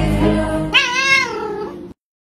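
A single cat meow about three quarters of a second in, lasting about half a second, over background music that cuts off abruptly just before the end.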